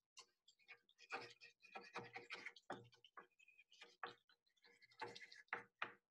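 Faint pencil writing on paper laid over a baking tray: short, irregular scratches and ticks as the lead skips across the paper.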